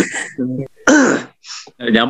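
A man laughing heartily in a few short, breathy bursts.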